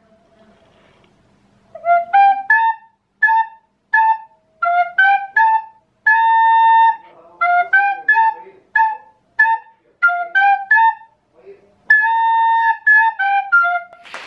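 Plastic recorder playing a simple tune in short, separately tongued notes, starting about two seconds in, with two longer held notes about six and twelve seconds in.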